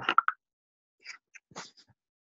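Brief scrambling noises from participants' open microphones on a video call: a cluster of short knocks and rustles right at the start, then a few more about halfway through. Each cuts in and out sharply, as the call's noise suppression gates it.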